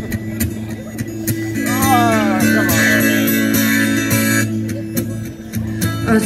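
Acoustic guitar strummed through a small amplifier, chords ringing steadily, with a voice heard briefly about two seconds in.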